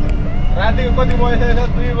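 Steady low rumble of a bus's engine and road noise heard inside the passenger cabin, with a voice talking over it from about half a second in.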